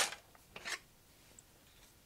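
Hands handling parts on a model-building workbench: a sharp click right at the start, then a brief, faint rustle a little under a second in.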